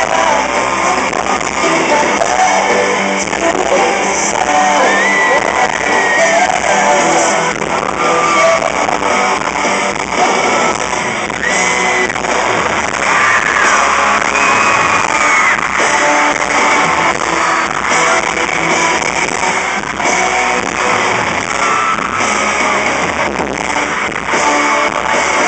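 A live pop-rock band playing a song: lead vocals over electric guitars and drums, recorded from the audience, with high screams from fans in the crowd.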